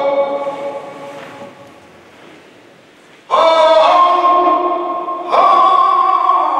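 A saeta sung by a solo voice without accompaniment, in a flamenco devotional style, in a reverberant church. A held phrase dies away into echo over the first three seconds, a new loud sung phrase starts about three seconds in, and another begins shortly before the end.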